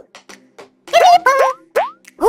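Cartoon sound effects: after a nearly quiet first second, a short squeaky burst with several quick rising pitch slides, ending in one strong upward slide near the end.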